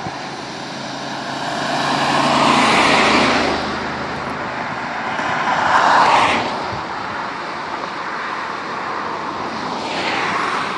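Highway traffic going past close by: two vehicles pass, the tyre and engine noise swelling to a peak about three seconds in and again about six seconds in, over a steady background rush.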